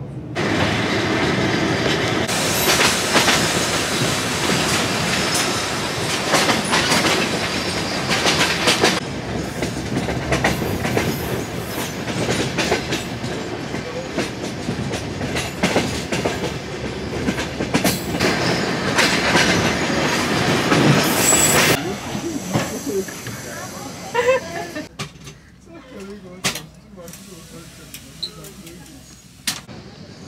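Passenger train running on the rails, heard from inside the carriage: steady running noise with scattered clacks of the wheels over rail joints. It drops to a quieter, patchier level about three quarters of the way through.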